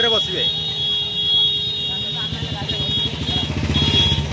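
Swaraj tractor's diesel engine running at idle, a steady low throb that grows heavier in the second half. A steady high tone sounds over it and breaks off about three seconds in.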